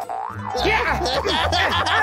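Cartoon sound effects: springy, wobbling boing glides over background music, with busier sliding tones from about half a second in.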